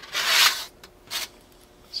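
A brief rubbing, rasping sound of heat-shrink tubing being handled, with a shorter, fainter rub about a second later.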